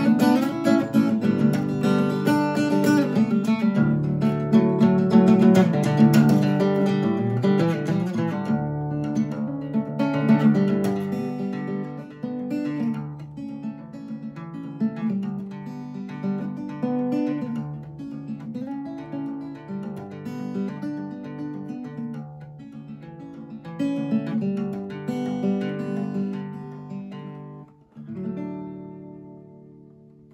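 Solo acoustic guitar playing an instrumental passage, strummed and picked, loud and busy at first and quieter from about twelve seconds in. A last chord near the end rings out and fades away.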